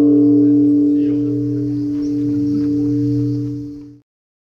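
A struck Buddhist bowl bell ringing on, a steady low tone with a few higher overtones, fading slowly and cut off at the end.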